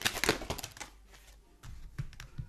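A tarot deck being shuffled by hand: a quick run of crisp card clicks for about the first second, then a few scattered softer taps.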